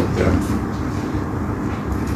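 Steady low background rumble, like a machine hum, holding level through a pause in speech.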